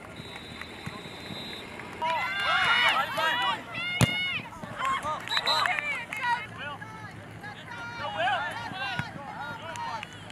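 Several voices shouting at once on a soccer field, from about two seconds in until about seven seconds, with more shouts near the end. A single sharp thump of a ball being kicked comes about four seconds in.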